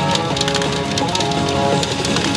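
PA Ginpara Mugen Carnival pachinko machine playing its mode music with steady musical tones, the hibiscus mode shown on its screen. Over it run many fine clicks from steel pachinko balls clattering through the machine.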